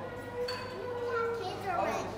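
A young girl's high-pitched voice calling out and chattering without clear words, over a faint steady low hum.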